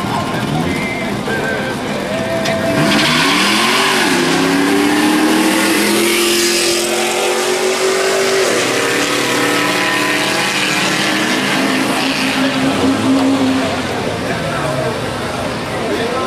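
Drag-racing cars launching side by side and accelerating down the strip, on camcorder audio. A sudden loud burst of engine and tyre noise comes about three seconds in, followed by an engine note that climbs in pitch for several seconds, with bystanders talking.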